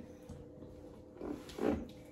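Two short, breathy, growly vocal sounds from a person about a second and a half in, over a faint steady hum.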